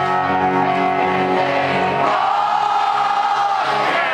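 Pop-punk band playing live with the audience singing along in a big hall, with a long held note in the second half, heard from within the crowd.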